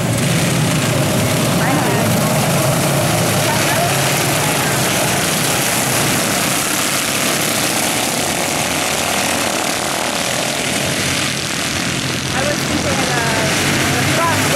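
A pack of minidwarf race cars' small engines running together at pace speed, a steady wall of engine noise with pitches wavering up and down as the cars circle the track.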